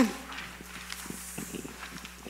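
Faint handling sounds in a quiet room: a few small scattered taps and the rustle of paper sheets.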